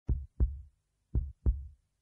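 A heartbeat sound effect: two beats, each a low double thump (lub-dub), about a second apart.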